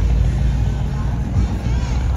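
Classic Chevrolet Impala lowrider's engine and exhaust running with a low, steady rumble as the car drives slowly away.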